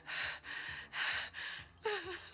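A young woman panting hard and fast, about two loud, breathy gasps a second, out of breath from running. Near the end her voice catches in one short sound that falls in pitch.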